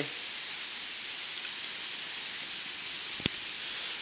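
Rain falling on a cellular polycarbonate roof, heard from inside as a steady hiss, with a single sharp click a little after three seconds in.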